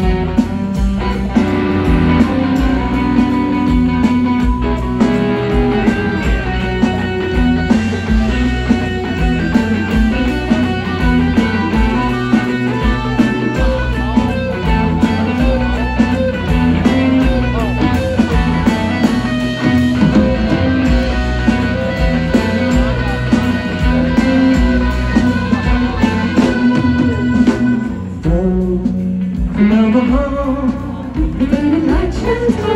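Live psychedelic rock band playing an instrumental passage: electric guitars and bass over a steady drum-kit beat, heard from among the crowd. The music dips briefly near the end, then carries on.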